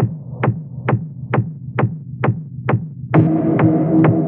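Electronic dance track: a steady four-on-the-floor kick drum, a little over two beats a second, over low bass tones, with a sustained synth chord coming in about three seconds in.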